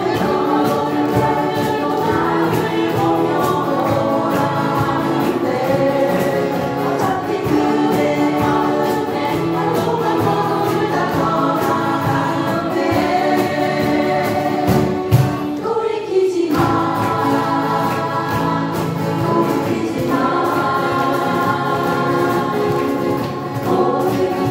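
A group of women singing together while strumming acoustic guitars, an amateur guitar-class ensemble; the music breaks off briefly about sixteen seconds in before carrying on.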